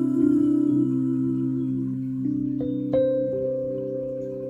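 Solo piano playing slow, sustained chords, with new notes struck about two and three seconds in.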